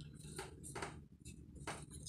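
Faint sipping through a straw from an aluminium drink can, about four short sounds roughly half a second apart.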